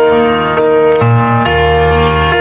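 Karaoke backing track playing an instrumental passage: sustained keyboard chords over a bass line, the harmony changing about every half second.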